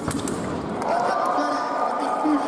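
A sharp hit right at the start as the sabre fencers meet, a blade clash or lunging foot on the piste, then from about a second in a drawn-out shout from a fencer after the touch.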